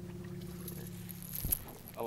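Steady low hum of a fishing boat's motor, ending with a sharp knock about a second and a half in.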